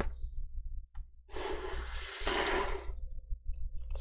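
A long breathy exhale close to the microphone, starting about a second and a half in and lasting under two seconds. A few small clicks of a screwdriver working a hinge screw on a MacBook Air come before and after it.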